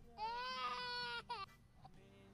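Crying sound effect: one long wailing cry lasting about a second, then a short falling sob.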